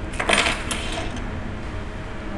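A brief metallic clinking rattle, several quick jingling strikes in the first second, over a steady low room hum.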